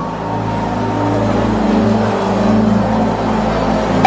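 Sustained keyboard pad playing slow, held chords under prayer, with a congregation praying aloud in the background.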